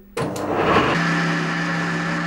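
Woodturning lathe running with a steady motor hum, coming in suddenly just after the start.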